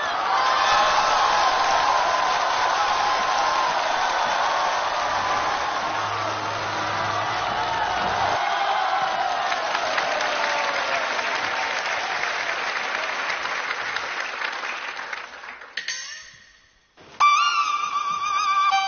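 Studio audience applauding and cheering, dying away about sixteen seconds in; a band's first pitched notes start just before the end.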